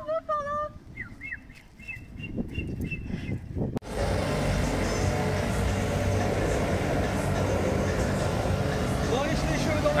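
Electric air blower running steadily while inflating a transparent water-walking ball, starting abruptly about four seconds in; before it, only faint distant voices.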